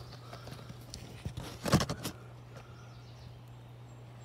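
A steady low hum with a short burst of scuffing or knocking about halfway through.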